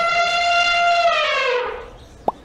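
An elephant trumpeting: one long brassy call, steady in pitch, that drops and fades near the end.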